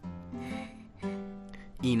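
Acoustic guitar background music, strummed chords about twice a second. A man's voice says "Ina" near the end.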